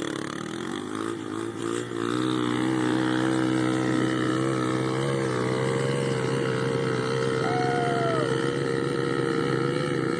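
Small dirt bike engine rising in pitch over the first two seconds, then running at a steady pitch.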